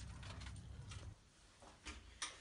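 Faint background noise, mostly a low rumble, that drops away about a second in to near silence.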